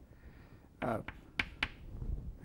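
Chalk tapping on a blackboard as a star is marked: two sharp clicks, quickly one after the other, about a second and a half in.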